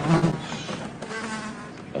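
A fly buzzing, a steady low buzz that wavers slightly in pitch.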